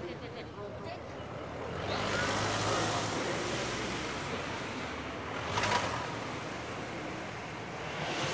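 Outdoor ambience: a steady noisy rush that swells about two seconds in, with faint indistinct voices. A brief cluster of clicks comes near six seconds.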